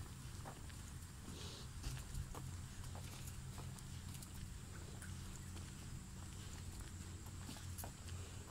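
Faint footsteps on a tiled paved sidewalk, a short tap roughly every half second, over a steady low rumble.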